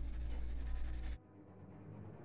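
A coloured pencil stroking lightly on paper, laying down brown in up-and-down strokes with little pressure. The sound cuts off suddenly about a second in.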